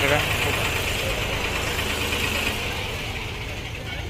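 A tractor's diesel engine idling, a steady low rumble that grows a little fainter toward the end.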